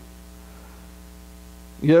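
Steady electrical mains hum: a low, even buzz with many evenly spaced overtones, unchanging throughout.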